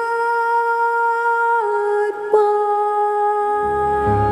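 A woman singing live, holding one long sustained note that steps down a little in pitch about a second and a half in, with a brief catch just after two seconds. Low instrumental accompaniment comes in near the end.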